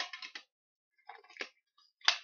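Pliers working a tight steel-rod wire holder off a small metal Altoids tin: a quick run of sharp metallic clicks, then a second run about a second in.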